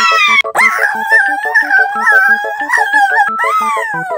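A long, high, strained vocal cry from a man forcing apart a solid chocolate figure, held for a few seconds and then falling away near the end, over background music with a steady beat.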